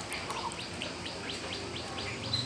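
A bird chirping in a quick, even series of short rising chirps, about four a second.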